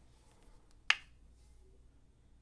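A single sharp plastic click about a second in: the flip-top cap of a plastic sauce squeeze bottle snapping open.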